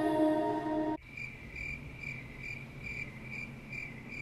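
Background music cuts off abruptly about a second in, leaving a cricket chirping steadily, about three short high chirps a second.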